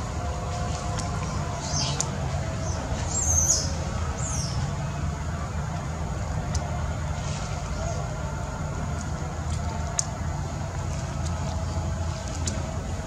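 Outdoor background: a steady low rumble, with a few short high chirps about three to four seconds in and scattered faint clicks.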